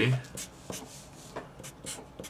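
A felt-tip Sharpie marker writing on paper in a few short, separate strokes.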